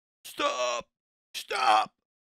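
A voice saying "stop" twice, about a second apart, with silence between the words.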